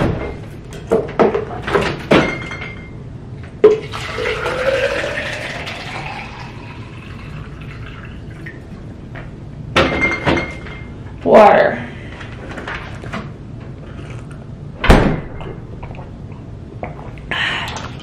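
Water poured into a plastic shaker bottle, its pitch rising steadily as the bottle fills, about four seconds in. Around it come the clicks and knocks of the fridge door and the bottle being handled, the loudest a knock near the end.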